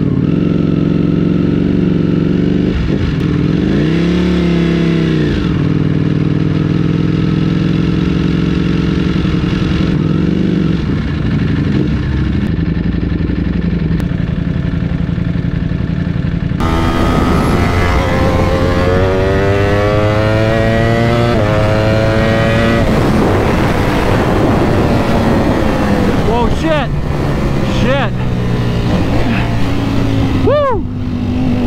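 Ducati Panigale V4's V4 engine idling with a couple of short throttle blips, then pulling away under throttle, its pitch climbing twice in quick succession about two-thirds of the way through, with further revving near the end.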